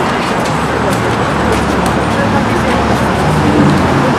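City traffic noise: a steady low hum of vehicle engines on the street, with voices of people nearby.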